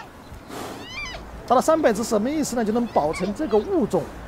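Giant panda cubs bleating and squealing as they play-fight: short high calls about a second in, then a busier run of short rising-and-falling calls.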